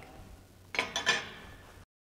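Short metallic clinking and handling noise, a few sharp knocks about halfway through, as a welded steel plate is set down among tools on a steel bench; then the sound cuts off abruptly.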